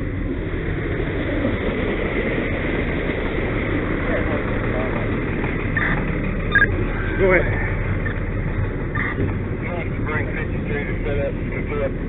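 Fire engine's engine running steadily at pump speed, a constant low drone with a noisy hiss over it. Brief snatches of voices come through a few times about halfway in.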